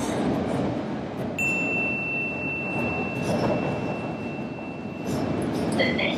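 London Underground train running, the dense rumble of the moving carriage heard from inside. A steady high-pitched whine comes in about a second and a half in and holds for about four seconds before fading.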